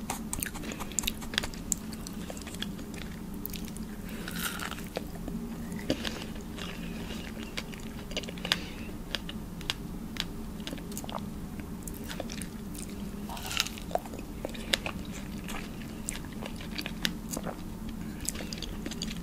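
Close-miked biting and chewing of fresh strawberries: wet, juicy mouth sounds with many small sharp clicks and smacks throughout.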